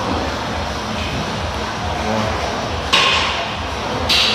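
Steady gym background noise, with one sharp metallic clank of weights near the end.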